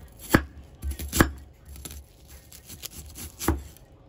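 Kitchen knife slicing through a white onion and hitting a wooden cutting board: three sharp chops, with lighter cuts between them.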